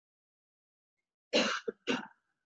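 Near silence, then a person coughing two or three times in quick succession, starting about a second and a half in.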